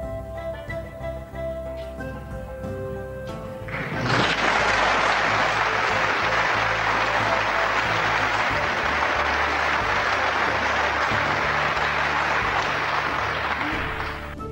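Instrumental background music, then about four seconds in a snooker audience starts applauding loudly, clapping that goes on over the music for about ten seconds and cuts off abruptly at the end.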